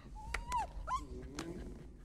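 Cartoon puppy whining and yipping: a high whine that rises and falls, then a short rising yip, then a lower sound, with a few sharp clicks between them.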